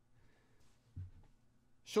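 A quiet pause in speech with faint room tone and one brief, faint low sound about a second in; a voice starts speaking near the end.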